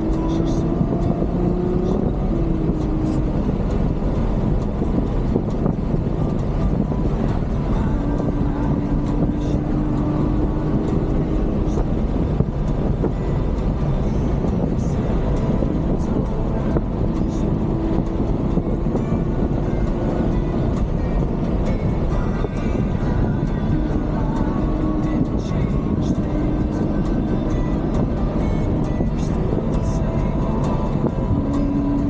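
The Ferrari GTC4Lusso's V12 engine running while the car drives, heard inside the cabin over a constant rush of road and tyre noise. Its note holds steady for a few seconds at a time and shifts pitch now and then.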